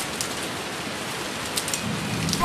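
Rain sound effect: a steady, even hiss of falling rain with a few sharper drops.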